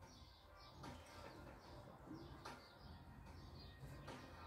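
Near silence with faint, repeated short bird chirps.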